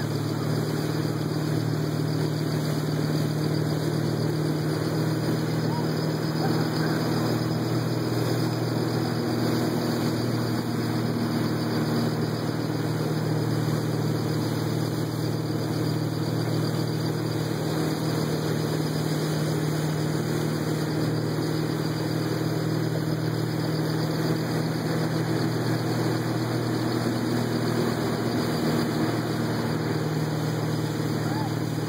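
Motorboat engine running steadily at cruising speed while towing, a constant low drone, with the rush and hiss of water and spray along the hull.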